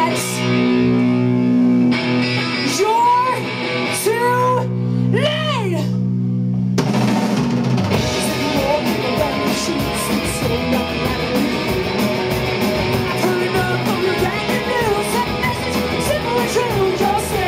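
Live hard rock band: a held, ringing electric guitar chord with a few rising-and-falling vocal calls over it, then about seven seconds in the drums and distorted guitars come in together at a fast, driving pace.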